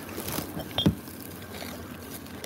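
Plastic bags and cardboard packaging rustling as gloved hands sort through salvaged items, with a short knock a little under a second in.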